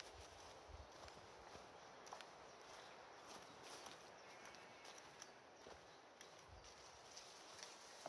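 Near silence with faint, irregular footsteps on a grassy path and a few soft knocks.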